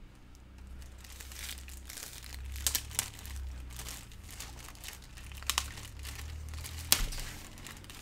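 Plastic packaging crinkling and rustling as a rolled diamond painting canvas is taken out and unwrapped, with a few sharp crackles.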